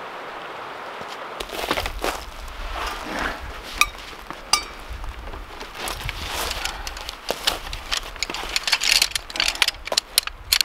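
Steady rush of river water for the first second or so, then the rustling of nylon fabric and a run of sharp clicks and clinks as the folding poles of a compact backpacking chair are snapped together and the seat is fitted.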